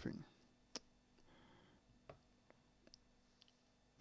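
Near silence with a few small, sharp clicks: one distinct click about three-quarters of a second in, then several fainter ticks scattered through the second half.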